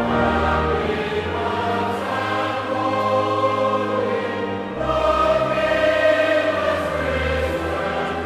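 Choir singing a sacred song with instrumental accompaniment, sustained notes over a held low bass.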